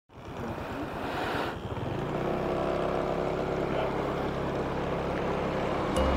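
A small engine running steadily at low speed, with wind noise on the microphone in the first second and a half.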